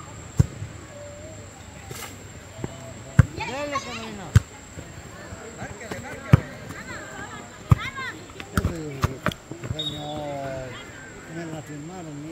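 Football kicked about on a grass pitch: a series of sharp thumps of boot on ball, about eight of them, the loudest about three, four and six seconds in, among the calls and shouts of the players.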